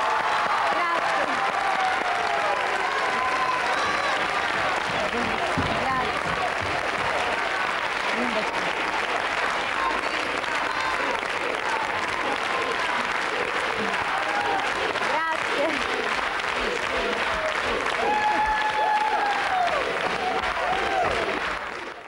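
Studio audience, mostly children, applauding steadily with excited shouts and cheers over the clapping.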